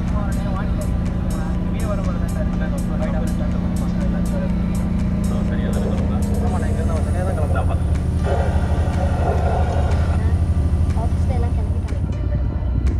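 Steady low drone of a BharatBenz A/C sleeper coach under way, heard from inside the cabin, with indistinct voices over it.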